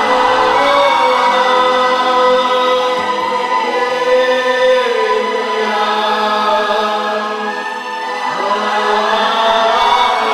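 Worship music: voices singing a slow devotional song over sustained electronic keyboard chords.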